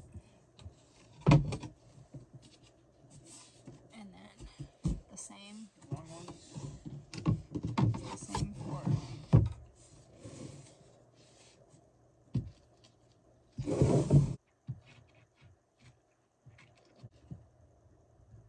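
Laminated particleboard furniture panels being handled on a floor during flat-pack assembly: scattered knocks, clacks and scrapes of board on board, with a louder scrape lasting about half a second near fourteen seconds in.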